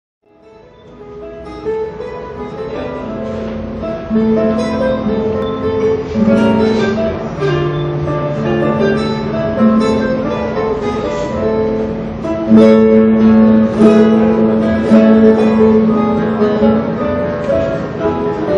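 Solo classical guitar played fingerstyle: a plucked melody over bass notes, fading in over the first couple of seconds.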